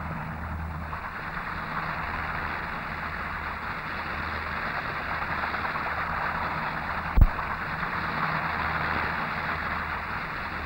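Fairey Rotodyne in slow, low flight with its rotor driven by tip-jets: a steady rushing roar over a low hum, heard through an old film soundtrack. A single sharp click comes about seven seconds in.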